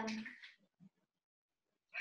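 The tail of a child's spoken answer trailing off in the first half second, followed by silence.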